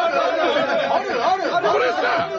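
Several voices at once in a radio studio: a chorus of overlapping, drawn-out 'aaah' calls.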